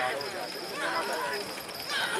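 Hooves of a pair of racing bullocks galloping on a dirt track as they pull a light cart, under people's voices calling and shouting.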